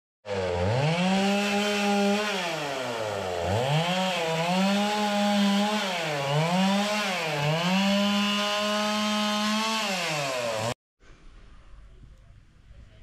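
Petrol chainsaw cutting wood, its engine revving up to a high held speed and easing back about four times, then stopping abruptly shortly before the end.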